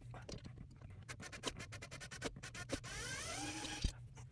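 Hand screwdriver turning screws into a bed frame's metal rail: a run of quick clicks, then a rising, buzzy whir about three seconds in as the handle is spun fast.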